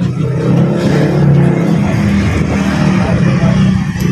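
A motor vehicle engine running steadily and fairly loudly, its low pitch wavering slightly and peaking about a second in.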